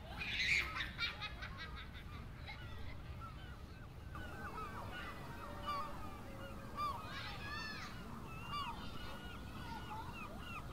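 Birds calling repeatedly in short calls over a steady low background rumble, with a louder burst about half a second in and a denser run of calls around seven seconds in.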